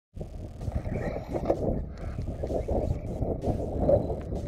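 Wind buffeting an action camera's microphone: an irregular, gusting low rumble.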